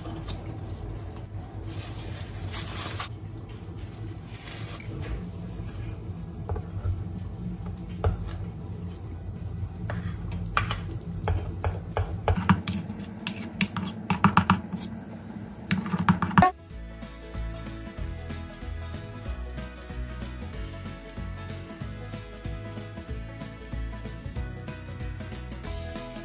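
A spatula scraping and clicking against a ceramic bowl as food colouring is stirred into cupcake batter. About sixteen seconds in this stops abruptly and background music takes over.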